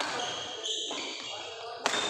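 Badminton rally: shoes squeaking on the court and a sharp racket strike on the shuttlecock near the end, with voices in the background.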